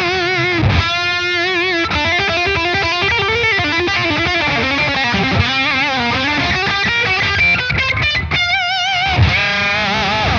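Electric guitar played through a Redbeard Effects Honey Badger octave fuzz pedal with its treble control on full: a fuzzy lead line with held notes under wide vibrato at the start and near the end, and quick runs of notes in between.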